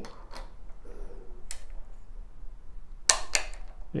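A small bicycle torque wrench tightening the mount's clamp bolt: a few sharp, isolated clicks of its ratchet, with a louder pair near the end as the bolt comes up to the set 5.1 Nm.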